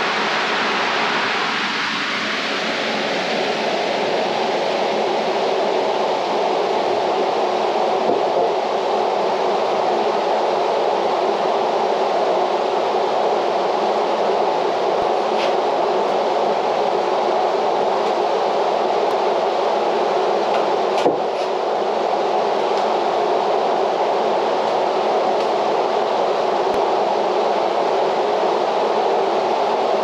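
Steady whooshing air noise of a large drum fan running, even in level throughout, with a couple of faint clicks.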